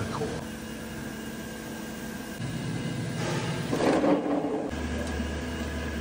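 Steady hum of factory machinery, with several faint steady tones. A rougher noise comes in around the middle, and a deeper steady hum joins near the end.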